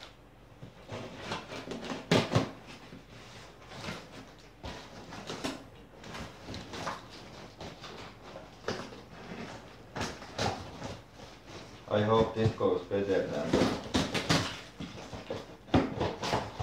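Scissors cutting packing tape on a large cardboard box and the flaps being pulled open: irregular scrapes, crackles and rustles of tape and cardboard.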